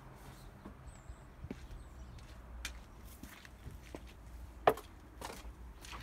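Footsteps and a few sharp knocks and clicks of items being handled in a wooden garden shed, the loudest knock about three-quarters of the way through, over a low rumble.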